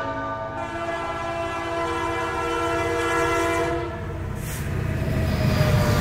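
Train horn sounding one held chord over the low rumble of a moving train. The horn stops about four seconds in, and the train noise builds toward the end.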